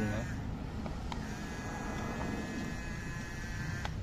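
Small electric gear motor of a remote-control toy wheel loader whining steadily as it raises the loader's bucket arm. The whine starts about a second in and stops just before the end.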